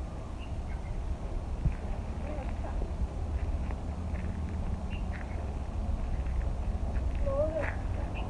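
Outdoor garden ambience: a steady low rumble of wind on the microphone, with faint short animal calls now and then and one clearer call near the end.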